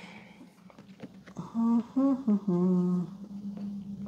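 A person humming a few notes of a tune about a second and a half in, then holding one long low note. Faint clicks of cardboard game tiles being handled sound underneath.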